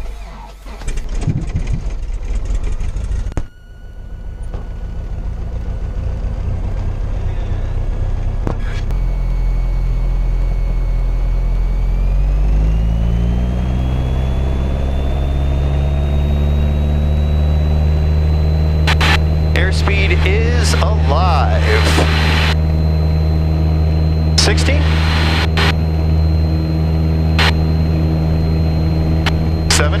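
Cessna 177 Cardinal's four-cylinder piston engine starting up and catching. After a cut it runs up to takeoff power, a steady drone heard inside the cabin that grows louder, its pitch rising and then holding as full power comes in for the takeoff roll.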